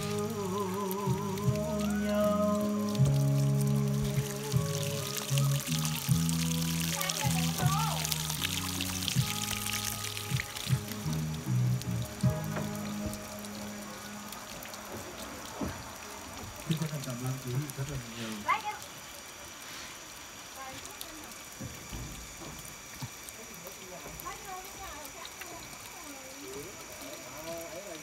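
Background music carrying a low melody through the first half, with water pouring and splashing onto wet wooden planks in the middle. Later it goes quieter, with only scattered small taps.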